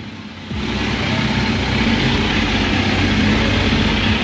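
Kawasaki Z900's inline-four engine idling steadily, the sound jumping in loudness about half a second in.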